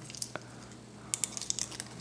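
Faint, scattered clicks and rustles of fingers handling a strip of 35mm film and a plastic cassette spool, bending the film's tongue to hook it onto the spool.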